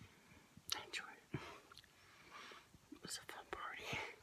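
A woman whispering close to the microphone in short breathy phrases, with a few sharp mouth clicks between them.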